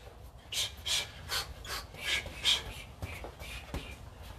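A man's sharp hissing exhales, six in a quick even row at about two and a half a second, the breaths of a six-punch boxing combination, followed by weaker breaths and two faint knocks near the end.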